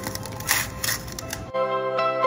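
Hands kneading flour dough in a steel bowl: a few short, soft squishes over quiet background music. About one and a half seconds in, the sound cuts to the music alone.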